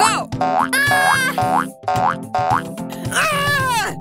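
Children's cartoon background music with cartoon sound-effect glides over it. A falling glide at the start is followed by four short rising boing-like sweeps, and a longer falling glide comes near the end.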